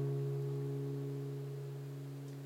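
The last chord of an acoustic guitar ringing out and slowly dying away, closing the song.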